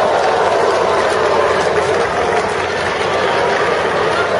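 Steady din of a large indoor crowd of spectators, a dense mass of voices and noise with no single voice standing out.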